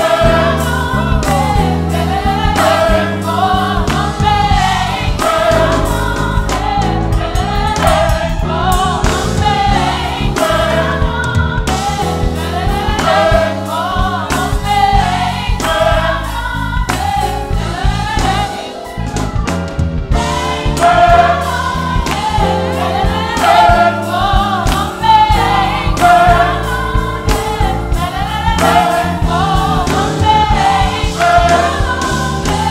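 A gospel choir singing a praise song in full voice, with instrumental accompaniment keeping a steady beat.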